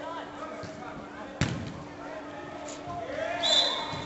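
A football struck hard once, a single sharp thud about a second and a half in that rings briefly in the sports hall, with players shouting around it.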